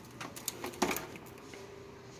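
A few soft clicks and rustles of wicker baskets being handled on a chrome wire shelf, bunched in the first second, over quiet room tone.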